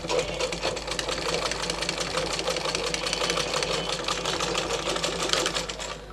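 Domestic sewing machine stitching at a steady pace, a rapid even ticking of the needle mechanism that stops near the end.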